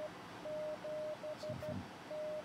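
Morse code from the PI7CIS 70 cm beacon, received on an Icom IC-9700 in CW mode and heard from the radio's speaker: a steady mid-pitched tone keyed in dashes and dots, starting about half a second in.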